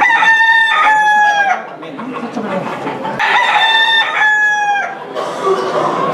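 Gamecocks crowing: two long crows, one right at the start and one about three seconds in, each falling slightly in pitch at its tail.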